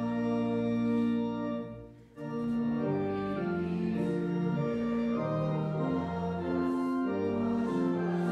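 Church organ playing a hymn tune in held chords that change every second or so, with a brief break in the sound about two seconds in before it goes on.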